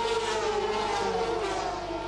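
Two-stroke engines of several racing sidecar outfits running at high revs as they pass, a steady note that sinks slowly in pitch.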